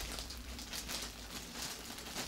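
Faint, soft rustling of polyester fiberfill stuffing and fabric being handled, over a low steady room hum.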